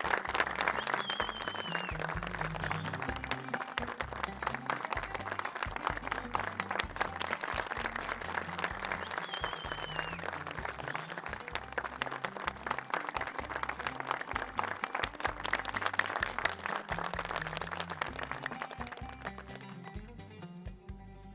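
A crowd clapping over music with a steady low beat. Two short, high, wavering tones come through, about a second in and again about nine seconds in.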